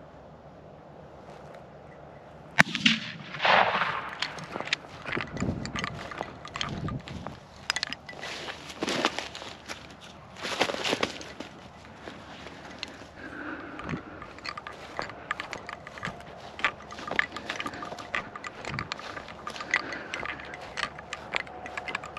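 Footsteps and rustling through short field grass as the camera is carried, irregular and uneven, with one sharp click about two and a half seconds in.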